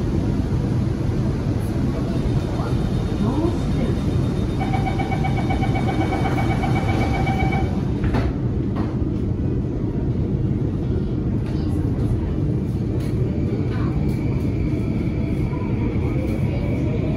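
Interior of a Bombardier Movia C951 metro car at a station, with a steady rumble throughout. About five seconds in, a pulsing door-closing warning tone sounds for about three seconds, and a knock follows as the doors shut. Near the end, a rising whine of the traction motors is heard as the train pulls away.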